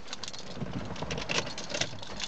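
A run of light clicks and rattles from handling inside a car cabin.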